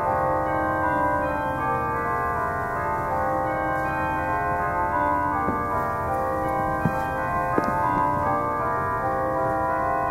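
Bells chiming as music: many notes ring on and overlap, with new notes struck every so often. Two soft knocks come through about seven seconds in.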